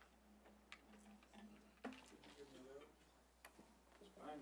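Near silence: room tone with a few faint scattered clicks and a brief faint murmur of voices about two seconds in.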